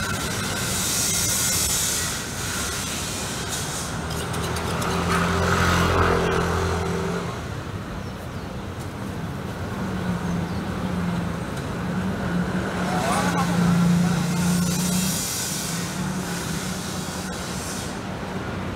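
Busy street traffic: motor vehicles passing close by, swelling about five seconds in and again near fourteen seconds, over a steady traffic background. A short high hiss sounds near the start.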